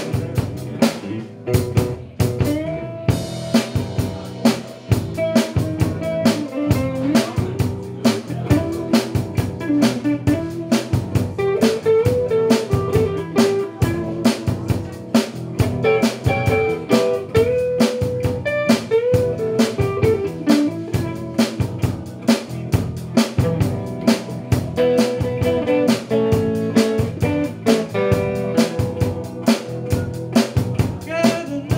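Live band playing a blues-rock song on electric guitars, bass guitar and drum kit. A guitar carries a single-note melody over a steady drum beat.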